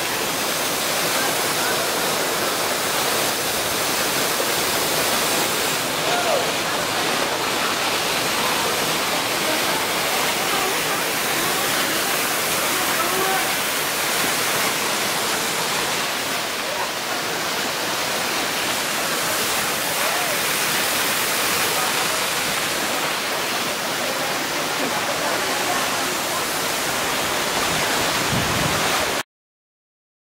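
Kapil Dhara waterfall: a steady, loud rush of falling water that cuts off suddenly near the end.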